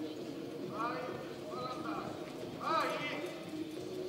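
Hoofbeats of a horse loping on the soft dirt of an arena, with people's voices talking over them.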